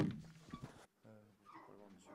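Handling noise from a handheld microphone being lowered and set down: a sharp knock at the start that fades within a second. Then near silence, with a few faint, brief pitched sounds.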